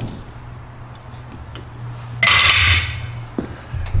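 Lathe chuck being tightened with its chuck key: a short, harsh metallic scrape about two seconds in, then a light click, over a low steady hum.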